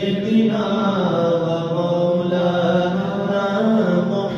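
Unaccompanied devotional chanting by male voices, in long held notes that bend slowly in pitch.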